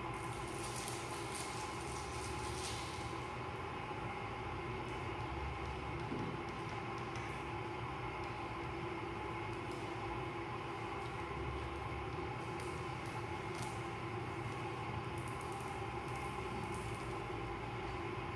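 Steady room hum with faint, brief crackles of clear adhesive tape being handled and peeled off a tabletop, in the first few seconds and again after about twelve seconds.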